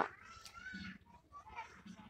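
A faint, short pitched call, like an animal's, in the background in the first second, followed by a few faint scattered sounds.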